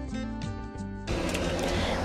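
Soft background music of plucked acoustic-guitar notes, cut off about a second in by a steady noisy hiss.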